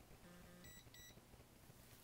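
Two faint, short electronic beeps in quick succession a little under a second in, over near silence.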